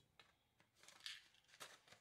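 Near silence, with a few faint, brief rustles of hands handling a small cardboard package, about a second in and again shortly before the end.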